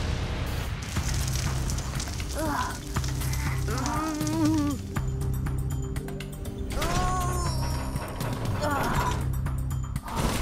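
Cartoon robot sound effects: rapid mechanical clicking and ratcheting over a steady low music score, with a few short voice-like cries.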